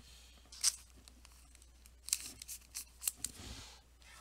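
A trading card being handled with a thin clear plastic penny sleeve: a few short crinkles of the plastic, then a longer soft sliding swish near the end as the card goes into the sleeve.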